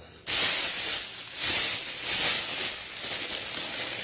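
Thin plastic bag crinkling and rustling as it is handled and pulled open, starting about a third of a second in and going on in uneven surges.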